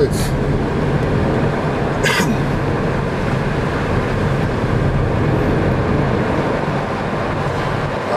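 Steady road and engine noise of a car driving along a paved road, heard from inside the cabin. Two brief high-pitched noises stand out, one right at the start and one about two seconds in.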